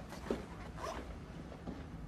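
Soft footsteps and clothing rustle of two people walking away through a doorway, a few scattered light scuffs.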